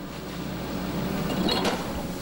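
Diesel engine of a Liebherr 914 Litronic hydraulic excavator running steadily as it lowers a boulder of a couple of tons into the river, over the rush of the flowing water. The noise slowly grows louder.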